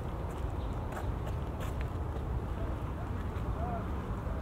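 Outdoor ambience: a steady low rumble with faint, indistinct voices in the distance and a few light clicks.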